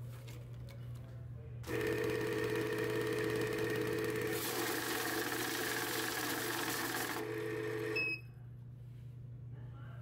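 Cassida desktop bill-counting machine running a stack of paper bills through its feeder: a steady motor whir with rapid flicking of notes that starts about two seconds in and lasts about six seconds, then stops with a short high beep. A low steady hum runs throughout.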